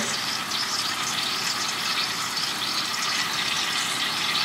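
Noodles cooking in a bubbling miso-butter sauce in a frying pan, giving a steady sizzle.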